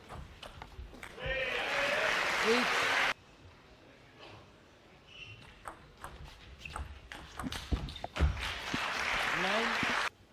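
Table tennis ball clicking off bats and table during rallies. Twice a point ends in crowd applause with a voice shouting over it. The first burst of applause cuts off suddenly about three seconds in, and the second comes near the end.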